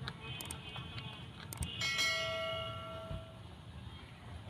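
Subscribe-button overlay sound effect: a couple of sharp mouse clicks, then a bell chimes once just before two seconds in and rings out, fading over about a second and a half.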